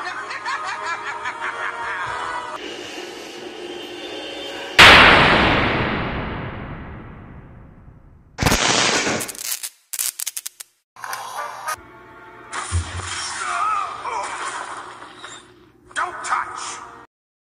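Dramatic cartoon soundtrack music, then about five seconds in a sudden, very loud thunder crack that dies away over about three seconds. Several short choppy bursts of sound effects and more music follow.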